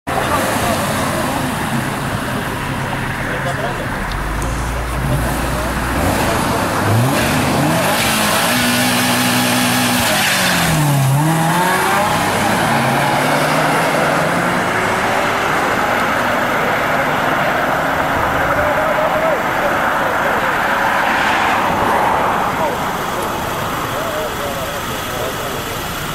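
Two cars accelerating hard side by side: a Toyota Mark II's 1JZ-GTE turbocharged straight-six and a Subaru Legacy Spec B, engine notes climbing in pitch, dipping at a gear change about eleven seconds in and climbing again. They pass by with a rush of engine, tyre and wind noise that fades near the end.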